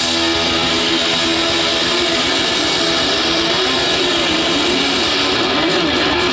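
Heavy metal band playing live: distorted electric guitars and bass over drums, loud and dense without a break, with a melody line that bends up and down.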